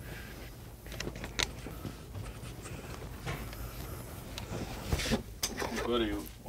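Shop room tone: a steady low hum with a few scattered small clicks and knocks, and a man's voice calling out right at the end.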